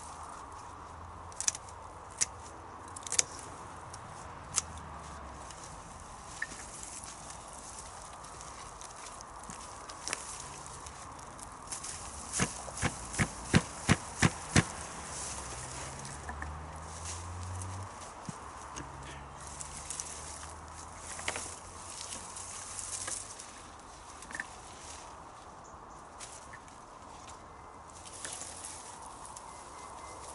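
Secateurs snipping through plant stems: a few single snips in the first few seconds, then a quick run of about seven snips, roughly three a second, about halfway through.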